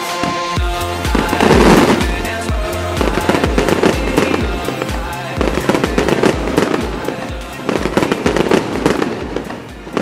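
Fireworks crackling and popping over dance music with a steady bass beat, fading out near the end.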